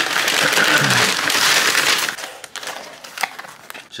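Paper bag rustling and crinkling loudly as a hand rummages inside it, easing after about two seconds into softer crackles and light paper clicks.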